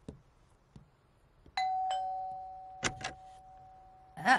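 Two-note ding-dong doorbell: a higher note, then a lower one, ringing out and slowly fading. A couple of faint footsteps come before it, and a door latch clicks twice about three seconds in as the door is opened.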